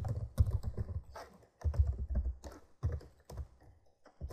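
Typing on a computer keyboard: quick bursts of key clicks with short pauses between them, thinning out near the end.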